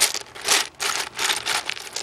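Small plastic Gogo's Crazy Bones figurines clattering against each other and the sides of a plastic bucket as a hand rummages through the pile, in a dense run of rattling bursts.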